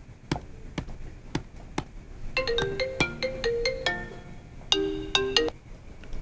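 A mobile phone ringing with a short electronic melody, played twice from a little over two seconds in. Before it come sharp clicks, about two a second.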